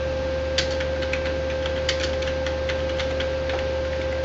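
Computer keyboard typing: an irregular run of key clicks, a few sharper keystrokes standing out, over a steady hum with a constant tone.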